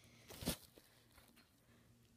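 One brief handling noise about half a second in, as a die-cast toy car is picked up and turned over on a cloth bedspread; otherwise faint room tone.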